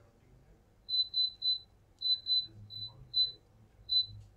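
A run of about eight short, high-pitched electronic beeps on one steady pitch, in irregular groups: three quick ones, then two, then single beeps.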